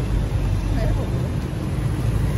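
Steady low rumble of city street traffic, with motor vehicles running close by.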